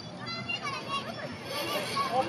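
Young children's voices: kids talking and playing.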